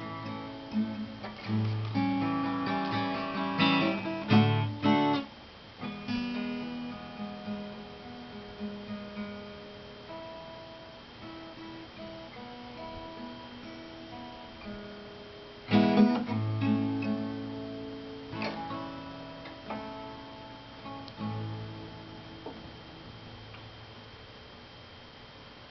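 Solo steel-string acoustic guitar playing an instrumental ending: strummed chords, loudest in the first few seconds, then lighter picked notes. A hard strummed chord comes about two-thirds of the way through, and the playing fades away toward the end.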